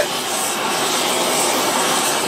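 Oxy-acetylene torch burning with a steady rushing noise as its flame pre-warms a steel ingot mold.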